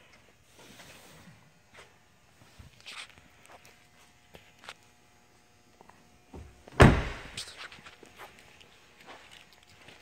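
An SUV's rear passenger door shutting with one solid thunk about seven seconds in, after a stretch of faint shuffling and small clicks.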